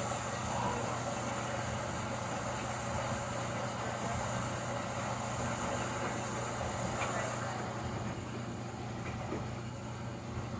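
Whirlpool front-loading washing machine running its cycle: a steady hum with an even rushing noise. A high hiss over it stops about three-quarters of the way through.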